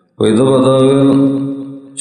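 A man's voice holding one long chanted syllable at a steady pitch, starting after a brief silent gap and fading out near the end.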